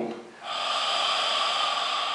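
A hookah being smoked: a steady pull on the hose draws air and smoke through the water-filled base, starting about half a second in and lasting some two seconds.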